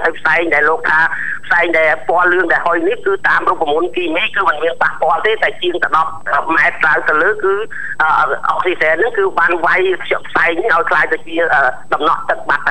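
Continuous speech: one voice talking without a break, thin and cut off in the highs as if heard over a telephone line.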